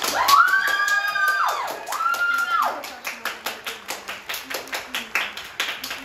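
Stage music with sharp, even claps about four a second in time with it. A voice calls out twice in the first three seconds.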